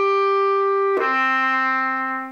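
Bass clarinet playing two sustained notes in the clarion register: a written A, then a fifth down to D about a second in. The D speaks cleanly without squeaking, played with the tongue held at the A's voicing.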